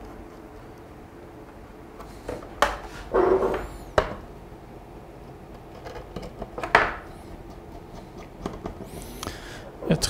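Light handling noises: a few sharp clicks and short scrapes of wires and a screwdriver against plastic screw terminals, with soft rustling between them.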